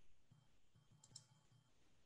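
Near silence: faint room tone, with a couple of brief faint clicks a little past a second in.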